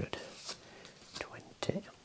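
Paper banknotes being counted out one by one: short crisp rustles and taps, with a soft whispered voice about three-quarters of the way through.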